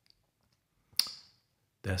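A single sharp click about a second in, with a short hiss fading after it; a man starts speaking near the end.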